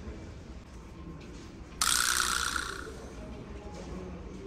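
A can of non-alcoholic beer (Sapporo Premium Alcohol Free) being opened by its pull tab: a sudden hiss of escaping gas a little under two seconds in, fading away over about a second.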